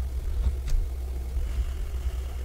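Steady low background hum or rumble picked up by the microphone, with a single faint click about two-thirds of a second in.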